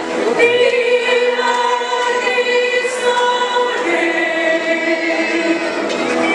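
A choir singing a slow hymn in harmony, holding long notes.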